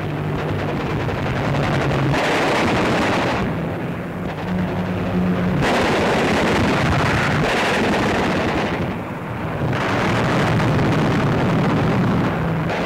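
Newsreel battle sound effects: dense gunfire and explosions over a low aircraft engine drone, the noise surging and easing in sections every second or two.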